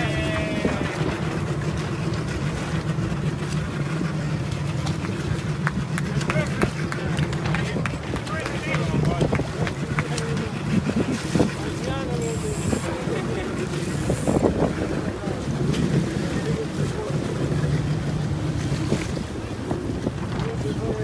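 Steady hum of a boat engine running at idle, with wind on the microphone and indistinct voices at times.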